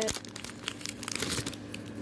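Foil Pokémon booster-pack wrapper crinkling in the hands, with small irregular crackles.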